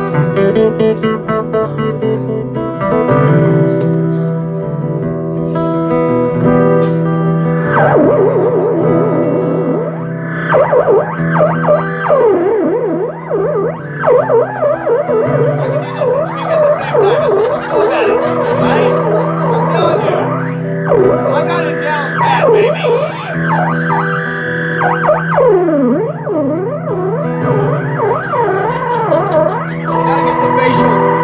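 Acoustic guitar played through effects pedals: a held, looping chord tone sustains throughout, and from about eight seconds in, fast swooping pitch glides sweep up and down over it.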